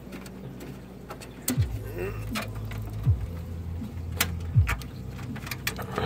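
Clicks, knocks and handling noise of a computer case side panel being unscrewed and taken off, over a steady low hum.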